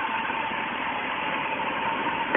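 1967 Kaiser Jeep Commando engine idling steadily, just started by a push-button start on a newly fitted electronic ignition. A thin steady high tone runs along with it.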